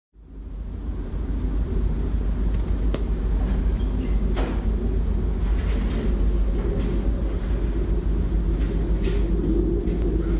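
Wind buffeting the microphone outdoors in a snowfall: a loud, unsteady low rumble, with a couple of faint clicks about three and four and a half seconds in.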